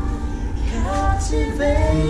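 Digital piano playing held chords while a singer's voice comes in over it about half a second in, sliding between notes.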